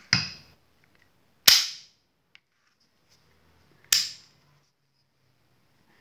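Three sharp metallic snaps from a Stoeger Cougar 9 mm pistol's action being worked by hand. The snaps come at the start, about a second and a half in (the loudest), and about four seconds in, each with a short ring.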